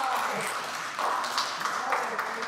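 Scattered hand-clapping and applause from a small group, with voices talking over it.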